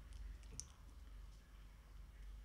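Near silence: quiet room tone with a steady low hum and a few faint clicks, the sharpest one about half a second in.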